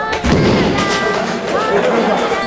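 A heavy thud about a quarter second in, a judoka's body hitting the tatami mat after a throw, over background music.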